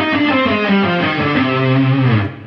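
Ibanez RG550 electric guitar playing a fast run of single notes that steps steadily down in pitch. It is a C minor pentatonic pattern played backwards, descending through the octaves, and it ends on a low note held briefly near the end.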